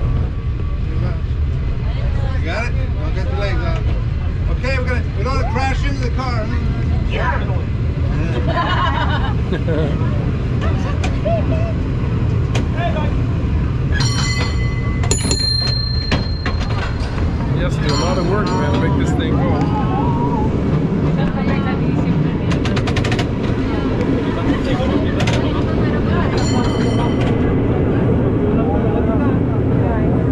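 San Francisco cable car running along its tracks, a steady low rumble from the wheels and the cable in its slot, with passengers talking. A few short runs of rapid clanging, a little under halfway through, again just after, and near the end, fit the car's bell being rung.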